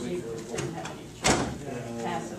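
Soft, murmured voices, with one short sharp knock about a second and a quarter in.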